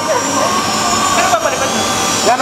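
Small drone hovering overhead, its propellers giving a steady whine, with people's voices calling out over it.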